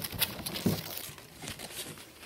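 Glitter craft foam strips and sheet rustling and crinkling as they are handled, with scattered small ticks and scrapes.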